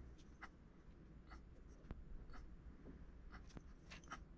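Faint scratching of a small metal sculpting tool dragged across modelling clay in short, irregular strokes.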